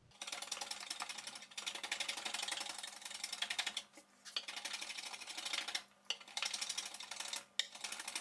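A hand tool, such as a small plane or rasp, is worked along a thin wooden strip in repeated scraping strokes. Each stroke lasts one to two seconds, with short pauses between them.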